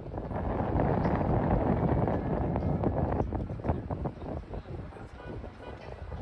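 Outdoor rooftop ambience: wind buffeting the phone's microphone over the hum of city traffic below, loudest in the first half and easing after about three seconds.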